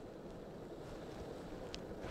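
Jetboil gas canister stove burner running, its cup of water at a boil: a faint, steady rushing noise.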